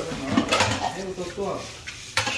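Indistinct talking, with a light clatter of dishes about half a second in.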